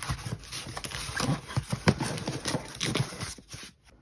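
Paper envelopes being handled, shuffled and stacked on a cardboard box: paper rustling with irregular knocks and taps, dying away near the end.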